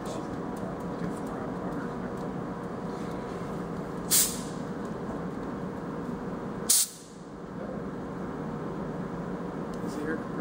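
Haas CNC mill giving two short, sharp hisses of compressed air, about four seconds in and again under three seconds later, over a steady shop hum. After the second hiss the hum dips briefly and then comes back.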